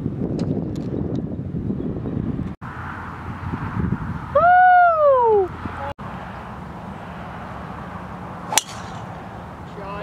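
Wind rumbling on the microphone, then a person's drawn-out wordless exclamation that rises and falls in pitch, the loudest sound. Near the end, a single sharp crack of a driver striking a golf ball off the tee.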